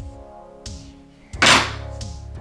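Background music, with one short sharp knock about one and a half seconds in as a glass soda bottle is handled.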